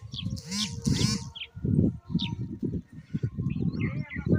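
Bird chirps, loudest in the first second and once more near the middle, over a dull, irregular thumping and rumble.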